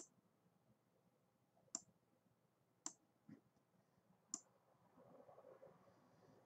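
Five quiet, sharp computer mouse clicks, spaced about a second apart, against near silence.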